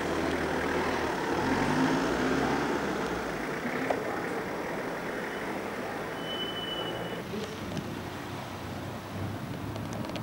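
Outdoor street ambience with a motor vehicle engine running, loudest in the first few seconds and then fading into general traffic noise. A brief high thin tone comes about six seconds in.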